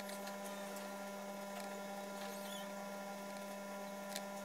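A steady electrical hum, with a few faint clicks and a brief high squeak about two and a half seconds in, as a plastic laptop cooling fan is handled and pressed into place on the motherboard.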